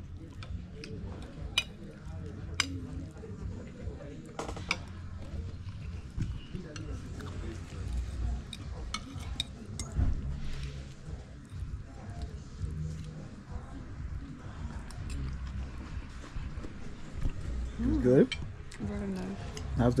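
A fork clinking and scraping against a plate and bowl while someone eats, as scattered light clicks over a low rumble, with faint voices in the background.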